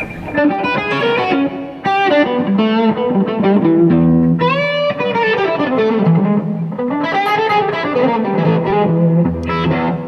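A 1970s Gibson Les Paul Custom with Lindy Fralin PAF-style humbuckers played through an attenuated amp. It plays a lead phrase of single notes with string bends, including a strong upward bend about four seconds in, and a line that falls and then climbs back up.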